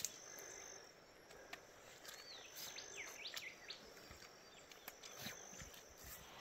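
Quiet bush ambience: a sharp click at the very start and a few scattered clicks from trekking poles and boots on rocky ground, with a short run of bird chirps in the middle and a faint steady insect tone.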